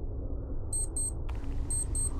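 Sci-fi TARDIS interior ambience sound effect: a steady low hum with two pairs of short, high electronic beeps about a second apart.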